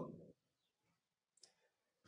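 Near silence, with one faint mouse click about one and a half seconds in.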